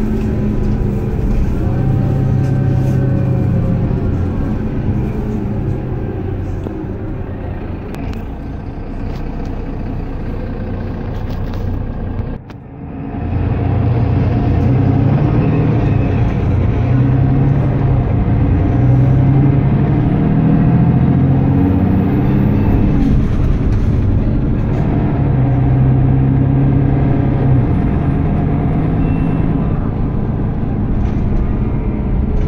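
Mercedes-Benz Citaro diesel bus heard from inside the passenger cabin while under way: the engine drone climbs and falls repeatedly as the automatic gearbox changes gear, over road and body noise. The sound drops sharply for a moment about twelve seconds in, then builds again.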